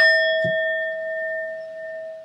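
Metal singing bowl struck once with a wooden mallet, ringing with one strong low tone and several fainter higher tones that fade slowly. A short, soft knock about half a second in.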